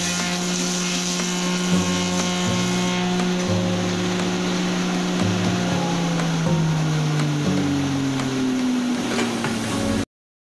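Electric copying lathe for carving wooden shoes (clogs) running: its motor hums steadily while a lower drone comes and goes every second or so as the cutter works the wooden blank. Over the last few seconds the hum falls in pitch as the machine slows down.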